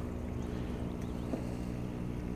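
Steady low electric hum of the hydroponic system's pumps running continuously.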